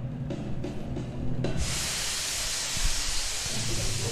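Stage vapour jets shooting white plumes upward with a loud, steady hiss that starts about a second and a half in, over the show's music.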